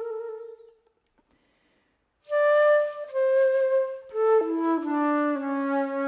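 Flute music: a held note fades away within the first second, and after a short silence a new phrase begins about two seconds in, stepping down through several notes to a low sustained note.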